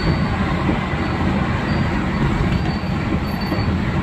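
Steady road and engine rumble heard from inside the cabin of a vehicle driving at speed on a highway.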